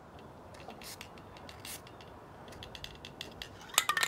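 Aerosol spray-paint cans being used and handled: a couple of short spray hisses and light clicking and rattling, with a louder clatter near the end as a can is picked up and shaken.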